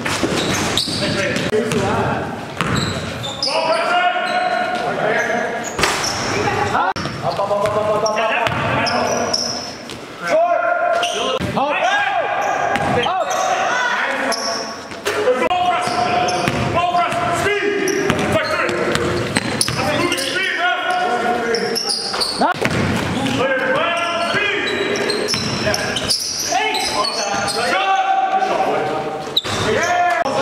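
Indoor basketball game: the ball bouncing on a hardwood gym floor among players' voices, in a large echoing hall.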